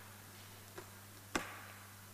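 Quiet room with a steady low electrical hum from the sound system, a faint tick, then one sharp click about a second and a half in from something handled on the desk close to the microphone.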